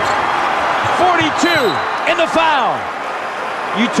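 Basketball arena crowd cheering loudly, with short high squeaks of sneakers on the hardwood court.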